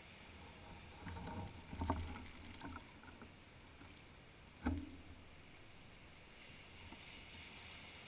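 Small waves washing up a sandy beach, faint and steady, with a brief patch of rattling clicks about a second in and a single sharp knock a little before five seconds.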